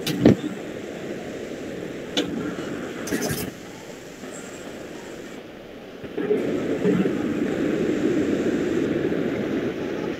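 Indistinct, muffled voices and background noise coming through a video call, with a few clicks in the first few seconds; the noise grows louder about six seconds in.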